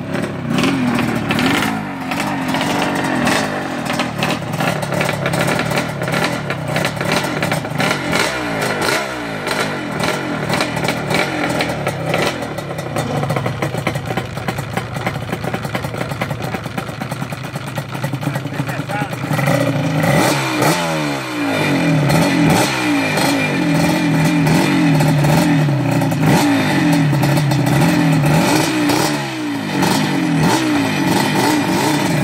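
Yamaha Banshee quad's twin-cylinder two-stroke engine running and being revved, its pitch rising and falling again and again. It gets louder from about twenty seconds in, with quick repeated revs.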